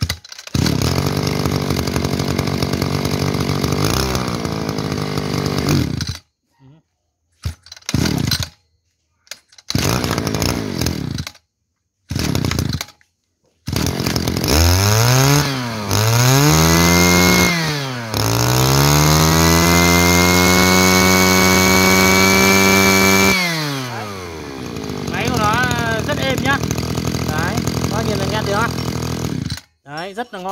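Small brush cutter engine running, cut by several abrupt silences, then revved up and down a few times, held at high revs for about five seconds and let drop back to a lower, steady run.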